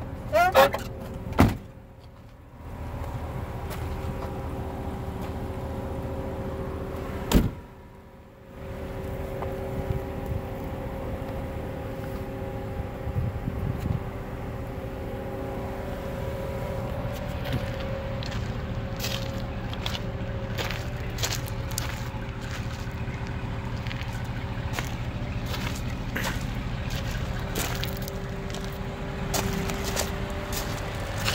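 2008 Hummer H2's V8 idling with a steady hum. Two sharp thumps come about a second and a half in and again about seven seconds in, and light clicks and taps follow in the second half.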